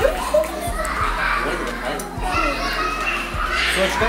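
A child's voice talking, with a laugh near the end, over background music.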